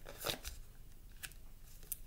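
Tarot cards being drawn from the deck and laid on a wooden table: a few faint, short card snaps and rustles.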